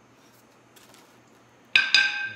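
A metal jack handle tube is set down on a concrete floor near the end: two quick clanks close together, with a bright metallic ring that hangs on after them.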